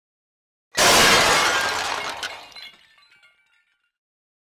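Glass-shattering sound effect: a sudden loud crash about three-quarters of a second in, fading over about two seconds into scattered high tinkling fragments.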